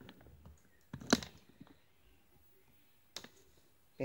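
Handling noise close to the microphone: a quick cluster of sharp clicks and knocks about a second in, and a fainter pair of clicks near the end.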